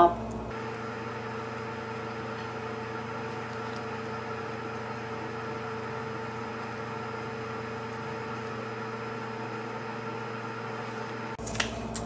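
Steady hum made of several constant tones over a faint hiss, unchanging throughout, with a small tap shortly before the end.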